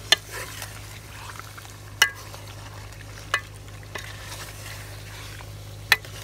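Steel ladle stirring chicken curry in a stainless steel pot, knocking against the pot four times, over the sizzle of the frying masala and a steady low hum.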